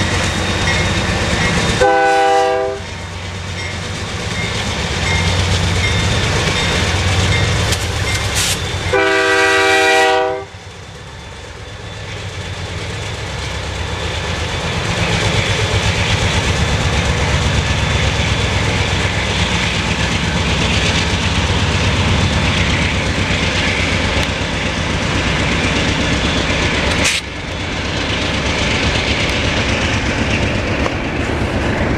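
Canadian National GE C44-9W and C40-8M diesel-electric locomotives passing close by, their engines running under load. The lead locomotive's air horn sounds twice, a short blast about two seconds in and a longer one about nine seconds in. Double-stack intermodal cars then follow with steady wheel rumble and clickety-clack over the rail joints, with a short click near the end.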